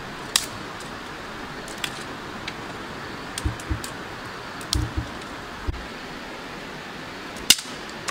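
Small handling noises as cooked fish is pulled apart by hand over a pan: scattered sharp clicks and a few soft low thumps over a steady hiss, the loudest click near the end.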